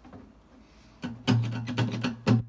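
Acoustic guitar strummed in chords, starting about a second in with a few strong strokes that open the song's rhythm.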